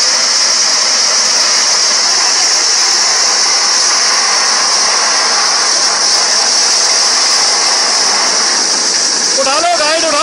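Truck-mounted borewell drilling rig blowing water and mud up out of the borehole: a loud, steady, high-pitched rush of air and spray over the rig's running engine.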